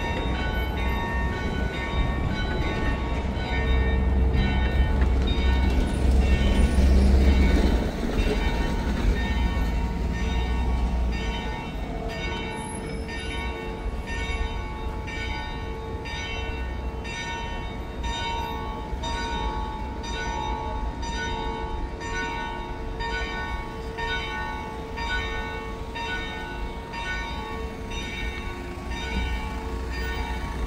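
Church bells ringing in a steady repeated peal, about one stroke every three quarters of a second, their tones hanging on between strokes. Underneath, a low rumble of passing street traffic is loudest in the first several seconds.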